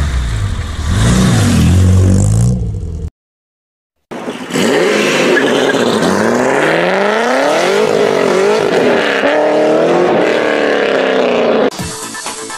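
A car engine running loud and low, cutting off suddenly about three seconds in. After about a second of silence, a car engine revs up and down over and over, its pitch rising and falling.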